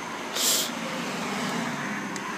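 A motor vehicle driving past, its sound swelling and holding, with a short hiss about half a second in.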